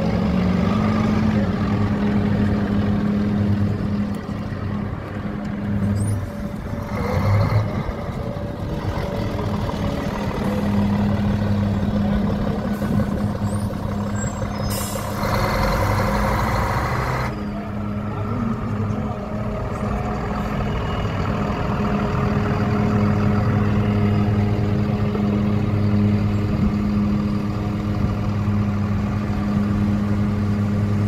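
Diesel engine of an articulated Karosa city bus running at close range, a steady low drone. There is a short hiss of air about seven seconds in and a louder hiss lasting about two seconds around the middle.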